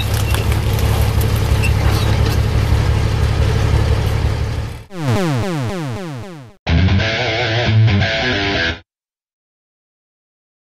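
Guitar music mixed with the heavy low rumble of a tank's engine and tracks rolling over and crushing plastic parts, for about five seconds. Then a series of falling pitch sweeps like a video-game 'game over' effect, and a short electronic jingle that stops suddenly, leaving silence.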